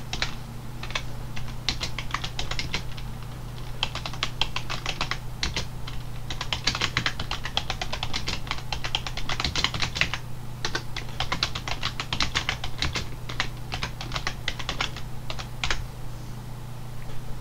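Typing on a computer keyboard: quick runs of key clicks broken by short pauses, over a steady low hum.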